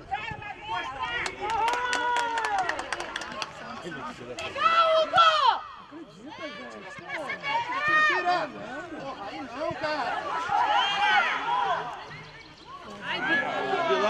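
Shouts and calls from coaches and players on a football pitch, coming in bursts throughout, with a quick run of sharp clicks about one to three seconds in.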